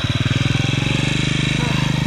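Small motorcycle engine running close by at raised revs, a steady, even beat.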